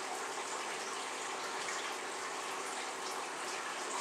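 A steady, even hiss of background noise with no distinct events.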